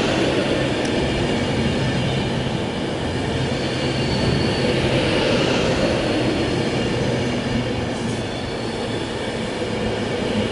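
Avanti West Coast Class 390 Pendolino electric train rolling slowly through the platform as it pulls in: a steady rumble with a low hum, and a high hiss from the wheels and rails that swells and fades about every five seconds as the coaches pass.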